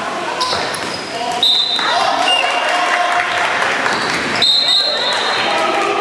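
Dodgeballs bouncing and smacking on a wooden sports-hall floor, with players shouting and calling across the echoing hall. The sharpest hits come about one and a half seconds in and again around four and a half seconds.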